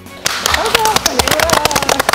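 A small group clapping, starting suddenly about a quarter of a second in, with voices calling out over the applause.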